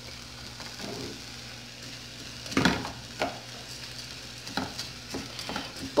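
Rice with grated carrot sizzling in a metal pot on a gas stove while a spoon stirs it, with a steady sizzle and several short scrapes and knocks of the spoon against the pot, the loudest about two and a half seconds in.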